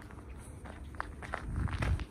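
Footsteps of a person walking quickly over gritty tarmac and gravel, a string of short scuffing steps, with a low rumble on the handheld microphone building near the end.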